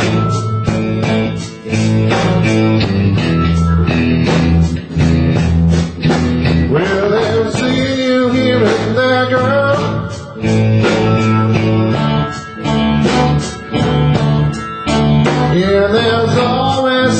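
Live blues band playing: electric guitars over drums and keyboard, with a lead line that bends up and down in pitch.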